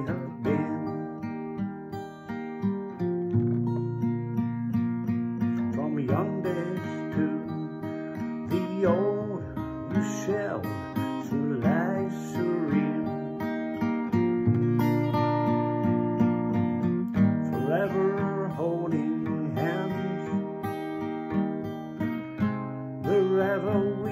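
Epiphone Hummingbird acoustic guitar played in a slow ballad, with a man's voice singing over the chords at intervals.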